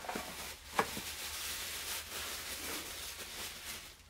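Paper wrapping rustling and crinkling as it is pulled open around a candle, with one sharp click a little under a second in.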